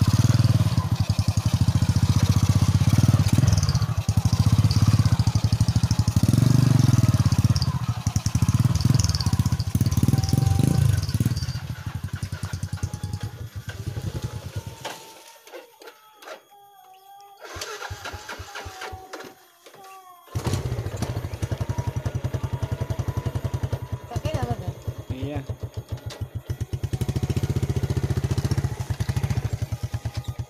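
Small underbone motorcycle engine running close by with a steady low firing beat. It fades away about halfway through, and after a few quieter seconds a motorcycle engine runs close again for the last third.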